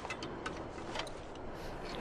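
A steady rush with a scatter of light, irregular clicks and knocks from climbing gear against the ladder at Everest's Second Step.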